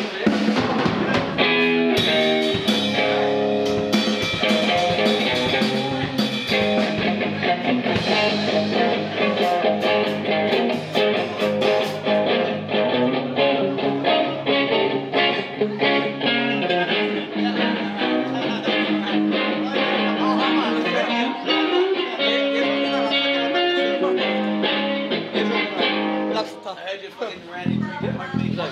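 A live rock band playing during a soundcheck: a Telecaster-style electric guitar played through an amp with a drum kit. The playing thins out near the end.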